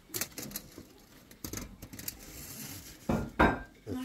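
Light clicks and taps of cutlery and dishes against a ceramic platter as food is handled at the table, with a louder clatter a little after three seconds in.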